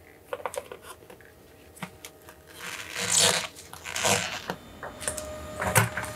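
Plastic paint-mixing cups and lids being handled on a workbench: light clicks and knocks, with two brief rustling noises about three and four seconds in.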